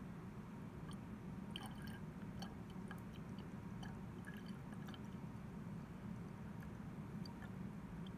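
Deionized water poured in a thin stream from an open plastic wash bottle into a glass volumetric flask: a faint trickle with small scattered drips and ticks, over a steady low hum.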